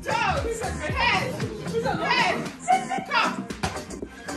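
A group of women shouting, shrieking and laughing excitedly during a party cup game, over background music with a steady beat.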